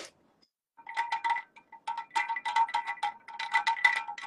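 Rapid, irregular clinking against a drinking glass, each strike ringing at the same pitch, like ice cubes rattled in a glass of cola.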